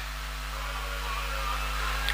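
Steady hiss with a faint low hum: the background noise of the hall picked up through the speaker's microphone and sound system.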